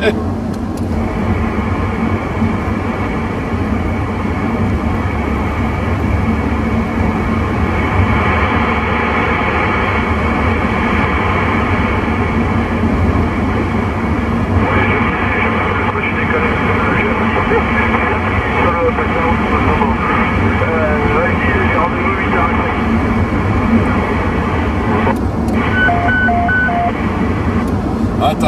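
President Lincoln II+ CB radio on channel 19 AM receiving a weak, noisy transmission: steady hiss with a voice buried too deep to follow. Three short beeps about 26 seconds in, a roger beep ending the transmission, over the car's road noise.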